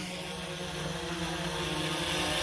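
Autel EVO II quadcopter hovering low overhead, its propellers giving a steady hum that grows slightly louder near the end.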